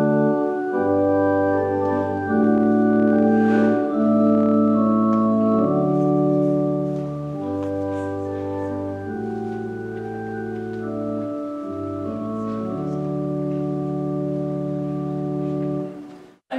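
Organ playing a church service prelude: slow, sustained chords over held bass notes, changing every second or two. It is a little softer in the second half.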